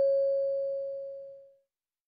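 The fading ring of a single bell-like chime tone, the signal in the test audio between the end of the dialogue and the repeated question; it dies away about one and a half seconds in.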